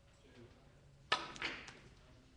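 A carom billiards shot: the cue tip strikes the cue ball with a sharp click about a second in, followed by a second, softer knock about a third of a second later as the ball travels.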